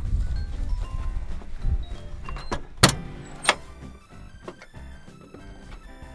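Low rumble of wind and movement, with two sharp knocks about three seconds in, then soft background music with steady notes over the last two seconds.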